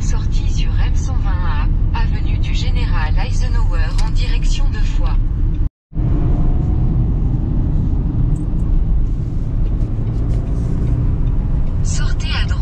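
Steady low road and engine rumble inside a moving Renault Captur's cabin, with voices talking over it for the first half. It drops out briefly just before the middle, then carries on as steady rumble.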